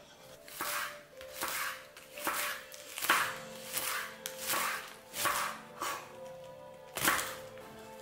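Kitchen knife chopping romaine lettuce on a wooden cutting board, a cut about once a second, with a short pause shortly before the end. Background music plays underneath.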